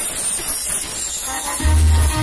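A salsa track starting over a party sound system. The low bass notes come in strongly about one and a half seconds in.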